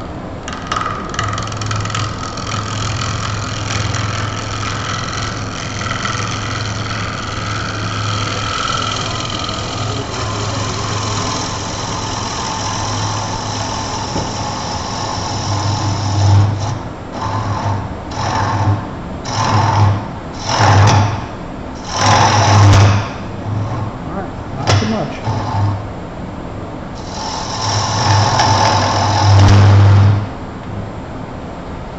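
Wood lathe running while a gouge cuts into the spinning wooden vase, throwing shavings. There is one long steady cut through the first half, then a run of short cuts about a second each with brief pauses between them, and a longer cut near the end.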